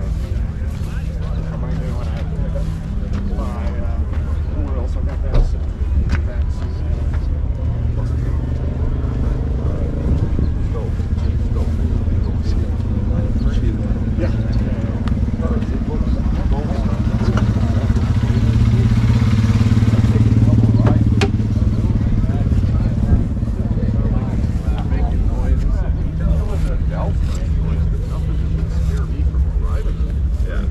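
A steady low engine drone, swelling louder for a few seconds past the middle, under background talk of voices.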